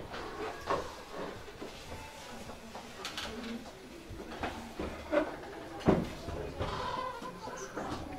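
Brief scattered voices and handling noises of people moving about a room, with a few light knocks and one sharp knock shortly before six seconds in.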